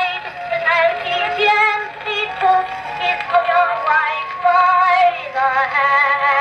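A spring-wound Edison Amberola cylinder phonograph playing an early acoustic cylinder recording of a woman singing. The voice has a wide vibrato, and the sound sits in a narrow band with little bass.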